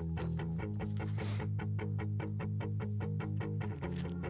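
A rock play-along backing track playing, driven by relentless eighth notes from guitar and bass, with the bass note changing about half a second in and again near the end.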